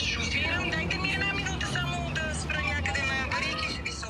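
People talking indistinctly, several voices overlapping, over a steady low rumble.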